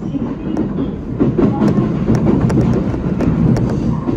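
JR East E127 series electric train running, heard from behind the cab: a steady rumble of wheels on rail with irregular sharp clicks and clacks as the wheels pass over rail joints and points, getting louder about a second in.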